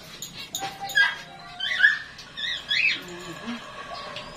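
Several short, high-pitched animal calls in quick succession, starting about a second in and ending near three seconds.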